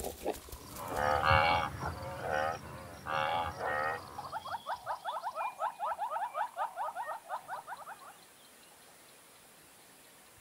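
Animal calls: several loud, drawn-out calls with a wavering pitch in the first few seconds, then a fast run of short rising notes, about six a second, for about four seconds. The calls stop near the end, leaving a faint steady background.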